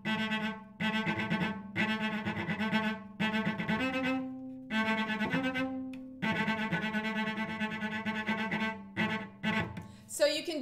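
Cello played with fast, short bouncing bow strokes (spiccato), repeating a single note in little bursts with brief breaks between them. Near the middle it moves up to a higher note for a couple of seconds.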